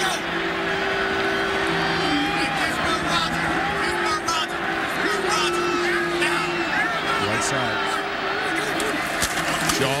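Stadium crowd noise at a college football game: many voices yelling at once, with a steady held tone running through most of it.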